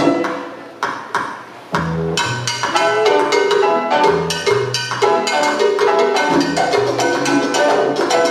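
Salsa music: the band drops out for a short break marked by two sharp percussion hits, then comes back in full with a pulsing bass line and percussion just under two seconds in.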